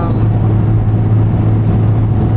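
Steady cabin noise inside a moving car: a low, constant engine and road drone.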